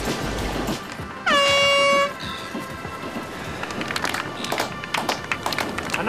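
A handheld canister air horn gives one blast of a bit under a second, about a second in. It dips briefly in pitch, then holds one steady, loud tone over background music: the contest horn marking the end of a surfing heat.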